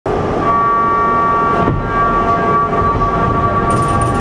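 A Schwarzkopf steel roller coaster train rumbling as it moves through the station. A steady high tone is held over the rumble, with a single knock about a second and a half in.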